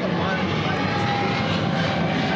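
Steady engine drone of an aircraft passing overhead.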